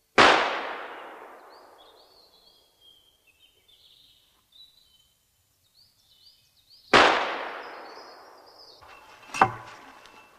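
Two gunshots about seven seconds apart, each echoing and dying away over two to three seconds, with small birds chirping faintly in between. A sharp knock comes near the end.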